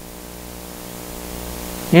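Steady hiss with a faint electrical mains hum from the recording, growing gradually louder; a man's voice comes in right at the end.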